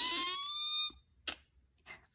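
A woman's high, drawn-out vocal squeak imitating a creaking door. It rises in pitch and stops about a second in.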